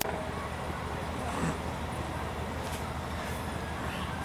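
Steady background noise of a gathering heard through the stage microphones: a constant low hum under an even hiss, with faint indistinct voices.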